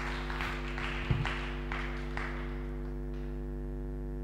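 A congregation claps its hands, the scattered clapping dying away about two seconds in, over a steady low hum.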